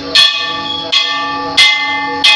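Brass Hindu temple bell rung by hand, struck three times at an even pace, each strike ringing on with several clear tones until the next.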